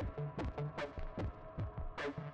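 Background electronic music with a steady pulsing beat over sustained synth tones.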